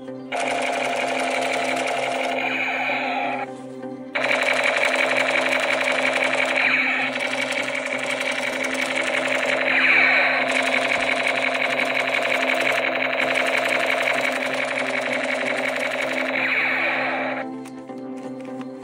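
Battery-powered toy AK47 gun firing its electronic rapid-fire effect, a dense buzzing rattle. A short burst of about three seconds comes first, then one long burst of about thirteen seconds that cuts off near the end. Background music plays underneath.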